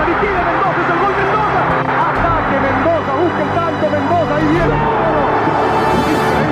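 Football stadium crowd heard through a TV match broadcast: a dense mass of many voices overlapping, with music playing underneath.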